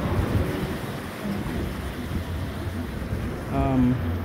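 Wind buffeting a phone microphone over the wash of the sea against a rock breakwater, a steady low rumble. Near the end, a short voiced sound from a person.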